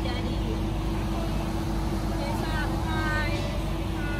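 A moored motor yacht's engine running steadily at idle: a constant low rumble with a steady hum, with faint voices over it.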